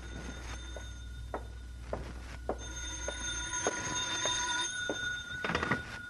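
Telephone bell ringing, a radio-drama sound effect, with a few sharp clicks along the way.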